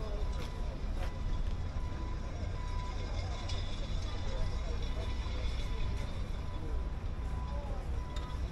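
Outdoor background at a gathering: a steady low rumble with faint chatter of distant people.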